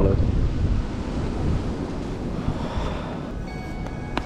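Wind buffeting the microphone: a steady, uneven low rumble that eases off a little toward the end.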